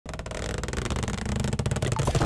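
Sound effects of an animated logo intro: a steady low electronic rumble with a quick, uneven flutter of clicks over it, slowly getting louder.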